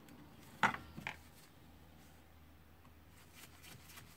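Small handling sounds of wires and plastic parts inside a cordless circular saw's housing: a sharp click a little over half a second in, a lighter one about a second in, then faint rustling and light ticks.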